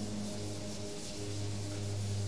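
Chalkboard duster wiping chalk off a blackboard: a steady rubbing hiss of repeated sweeps, over a low steady hum.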